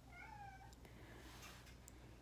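A cat meowing faintly: a single short, wavering meow of under a second near the start.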